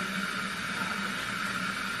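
Water from a kitchen pull-down faucet running steadily into a large plastic gravity dog waterer as it fills: an even rushing hiss with a faint low hum under it.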